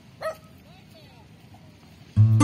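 A dog yips once, briefly, about a quarter of a second in, followed by a few faint rising-and-falling whines against a quiet background.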